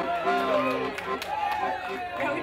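Piano accordion holding chords, with a voice sliding down in pitch over it about halfway through.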